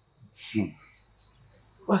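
Crickets chirping in a steady, rapid pulsing trill, with a man's short sigh-like vocal sound about half a second in.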